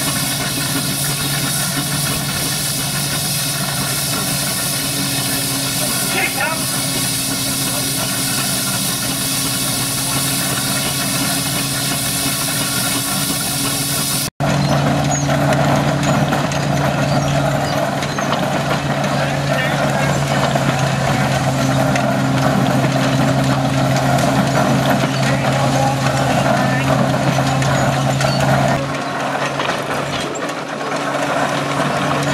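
Threshing drum belt-driven by a steam traction engine, running with a steady droning hum and mechanical clatter, broken briefly about halfway through.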